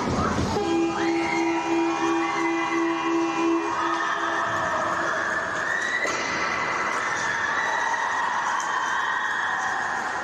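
An ice rink's horn blares for about three seconds, sounding as play stops, then gives way to a steady din of rink noise.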